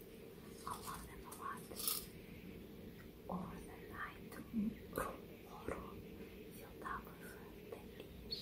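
A woman whispering close to the microphone in short, breathy bursts, with small mouth clicks between them.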